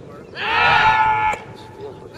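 A person near the camera yelling once, a loud drawn-out shout of about a second that starts about half a second in and cuts off sharply.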